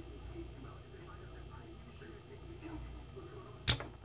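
Remington 870 trigger group with its stock trigger spring, squeezed slowly. After a quiet stretch, a single sharp metallic snap comes near the end as the trigger breaks and the hammer falls, at about a three-and-a-half-pound pull.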